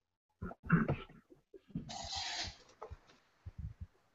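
Choppy video-call audio: brief scraps of a remote voice and a short burst of hiss cutting in and out, as the call's sound breaks up.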